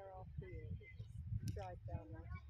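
Spectators' voices talking over a steady low rumble, with one sharp click about one and a half seconds in.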